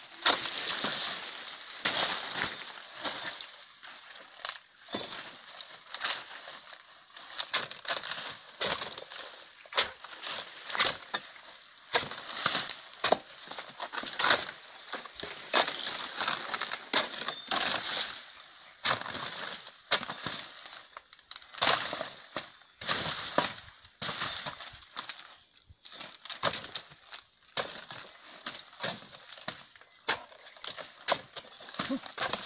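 Oil palm fronds being chopped and cut away by hand: an irregular run of sharp chops and crackly rustling, several a second, as the dry, overgrown fronds are hacked and pulled.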